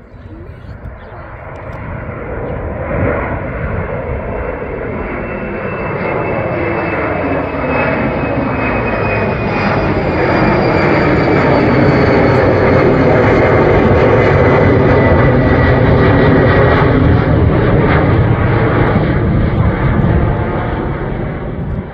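Embraer E190 jet airliner's twin GE CF34 turbofans at takeoff power, climbing out and passing overhead. The jet rumble grows steadily louder over the first dozen seconds and then holds, with a thin high fan whine sliding slowly down in pitch.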